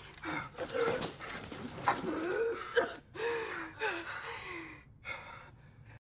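A person gasping hard for breath again and again, with short breathy cries between the gasps. Two sharp clicks sound about two and three seconds in, and the gasping trails off near the end.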